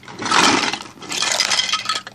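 A heap of small plastic Littlest Pet Shop toy accessories being dumped out of a container, clattering and clinking together in two loud rushes.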